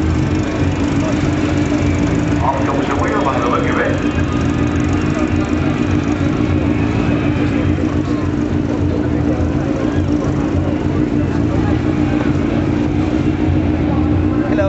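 Ural 750 cc flat-twin sidecar motorcycle engine running at a steady, even pitch throughout.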